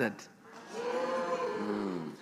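A long, held vocal response from a listener in the congregation, starting about half a second in. It is higher than the preacher's voice and drops in pitch near the end.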